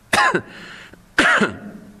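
A man clearing his throat twice, about a second apart.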